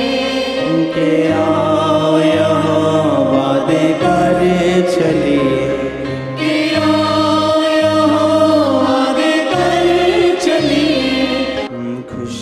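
A Punjabi Christian worship song: voices singing the melody over a held bass line whose notes change every second or so.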